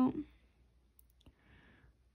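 Faint light clicks, two in quick succession about a second in, then a short soft swish, as an acrylic nail brush is worked in a glass dish of warm water.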